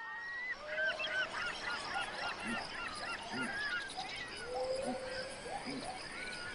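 Many birds calling at once: a busy chorus of overlapping chirps and whistles, with a short low hoot repeating every second or so in the second half.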